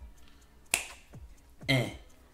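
A single sharp finger snap about three-quarters of a second in.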